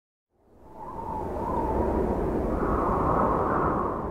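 A rushing whoosh sound effect for a studio logo intro. It swells up from silence about half a second in, holds loud, and begins to fade near the end.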